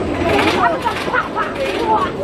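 Several people's voices chattering over the mechanical rattle of a Gerstlauer spinning roller coaster running on its track.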